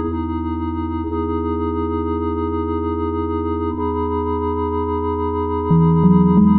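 Experimental synthesizer music: a sustained drone of steady, pure-sounding tones, which shifts in pitch about two-thirds of the way through. Near the end it gets louder as a run of notes starts stepping upward.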